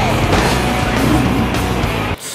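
Film soundtrack with music playing over a car engine running hard at speed.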